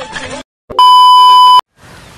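A loud, steady electronic beep: one pure tone lasting under a second that cuts in and stops abruptly, with a short silence on either side. Just before it, music from the previous clip cuts off.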